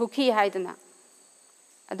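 A woman lecturing in Manipuri, breaking off for about a second before speaking again near the end. A faint, steady, high-pitched whine runs underneath.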